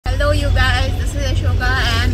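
Steady low rumble of a car on the road, heard from inside the cabin, with a woman's voice talking over it.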